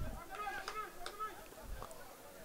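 Faint, distant voices of people calling out across a soccer field, with a few light ticks.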